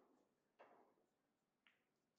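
Two faint, sharp finger snaps about a second apart, each ringing briefly in the hall.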